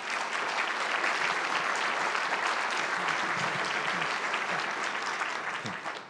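Audience applauding, with the clapping dying away near the end.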